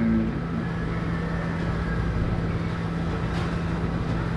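Steady low hum with a constant low tone over a background rumble, and a faint thin high sound about a second in.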